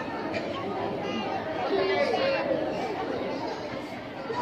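Indistinct chatter of several people talking at once, with overlapping voices and no clear words.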